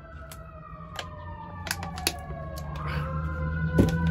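A fire siren wailing, its pitch sliding slowly down and then rising again near the end. Scattered sharp clicks and a knock near the end sound over it.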